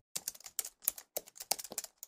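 Computer keyboard typing: a quick, uneven run of light key clicks as text is entered into a search bar.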